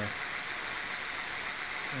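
Brushless hub motor spinning its unloaded wheel near full throttle, driven by a 24-FET controller: a steady, even whirring hiss.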